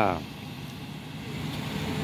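Low, steady street noise with a vehicle engine running, slowly getting louder toward the end.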